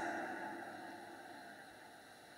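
A pause with no speech: faint room tone that fades steadily toward near silence.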